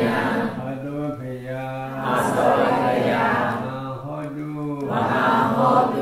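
A man's voice chanting Buddhist Pali verses, in slow, drawn-out phrases on sustained pitches.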